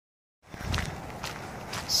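Footsteps on a dirt trail, about two steps a second, starting about half a second in.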